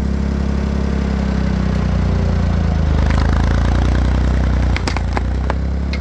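Tractor engine running steadily under load as it pulls a chain on a rotted wooden utility pole, its sound building a little from about halfway. Near the end, a handful of sharp cracks as the pole's rotted wood gives way at the base.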